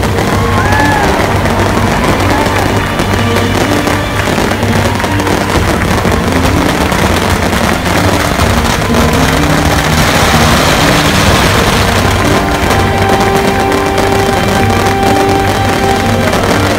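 Strings of firecrackers crackling densely over music with a steady melody.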